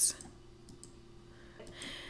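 A few faint computer mouse clicks, two quick ones just under a second in, over a low background hum, with a soft breath-like hiss near the end.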